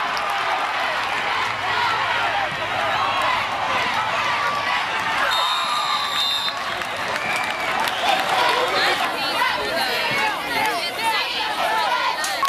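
Crowd at a high school football game, many voices shouting and cheering at once.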